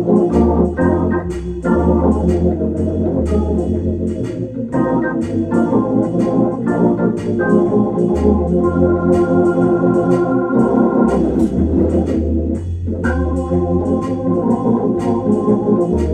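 Hammond organ playing blues: sustained chords over a bass line that steps from note to note, with crisp note attacks keeping a steady beat.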